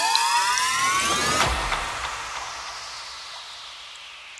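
Electronic psytrance music: several synth tones glide upward together for about a second and a half, cut off by a deep boom, and a hissing noise wash then fades away.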